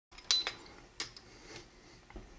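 Small metal clicks from a Beretta 92X pistol being handled and its hammer cocked for a single-action trigger-pull check: a sharp click about a third of a second in, then softer clicks around one and one and a half seconds.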